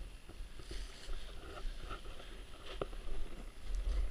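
Wind rushing over a skydiver's camera microphone under an open parachute on final approach: a low rumble that grows a little near the end, with scattered light rustles and ticks.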